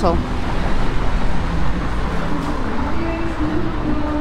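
Busy town-centre street ambience: steady traffic rumble from vehicles close by, with the murmur of passers-by talking.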